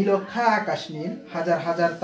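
Only speech: a man lecturing in Bengali.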